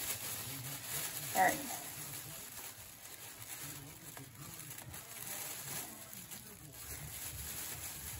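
Thin plastic grocery bag rustling and crinkling as a knot in its handles is picked at and worked loose by hand.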